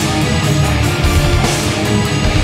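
Symphonic black metal band playing live at full volume: distorted guitars over dense, rapid drumming, with no break.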